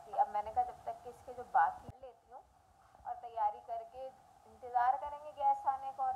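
Only speech: a woman talking, with a short pause about two seconds in.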